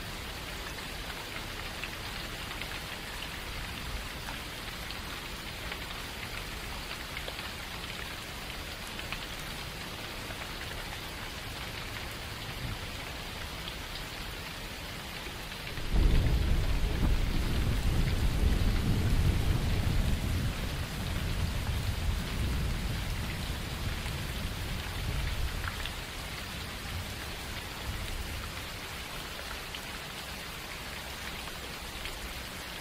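Steady rainfall hiss. About halfway through, a long, deep rumble of thunder starts suddenly. It is the loudest sound, and it slowly dies away over about ten seconds.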